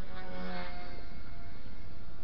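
XK K120 micro RC helicopter's brushless motors and rotors whining steadily in flight, several steady pitches at once, over wind rumble on the microphone.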